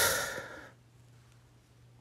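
A man's breathy sigh, fading out within the first second, followed by near silence with a faint steady low hum.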